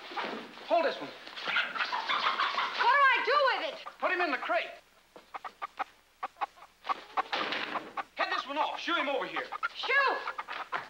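Chickens squawking and clucking in agitated bursts of short rising-and-falling calls as they are handled out of a wooden crate and break loose. The calls drop away for a couple of seconds in the middle, leaving a run of faint clicks, then pick up again.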